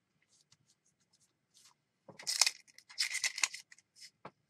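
Hands handling paper and craft supplies on a cutting mat: a few faint taps, then about two seconds in, a second and a half of irregular rustling and scraping.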